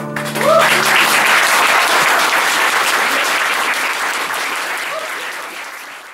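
Small audience applauding at the end of a song, starting about half a second in and fading away near the end. The last acoustic guitar chord rings out under the first clapping.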